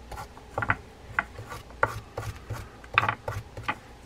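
A stiff brush scrubbing across the teeth of a D.A.M. Quick 441N spinning reel's main gear, a string of short, uneven scratchy strokes. It is scouring out old dried grease and dirt packed between the teeth.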